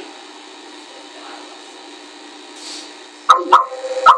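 Low steady background hiss of room noise during a pause in speech, then a man's voice starts talking again near the end.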